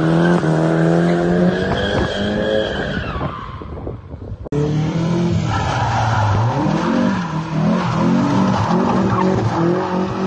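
Car engine revving, its pitch rising over the first three seconds and then fading, with a sudden cut about four and a half seconds in. After the cut the engine revs up and down over and over, with tyre squeal.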